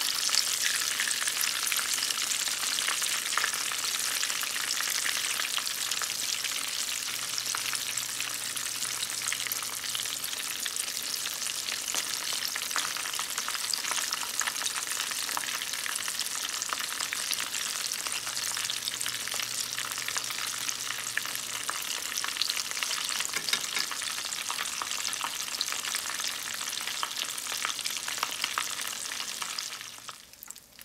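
Spring rolls shallow-frying in hot oil in a nonstick pan: a steady, dense crackling sizzle with many small pops.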